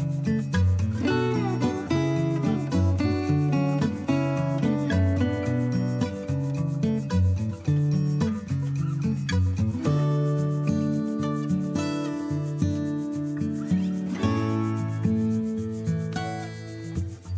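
Background instrumental music: a melody of short steady notes moving over a bass line, continuing throughout.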